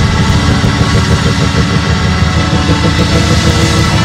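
Loud live church band music during a praise break, with a heavy, dense low end and steady held tones above it.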